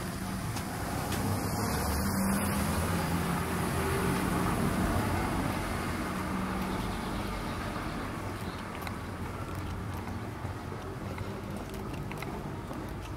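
A car engine running at low speed, swelling over the first few seconds and then slowly fading.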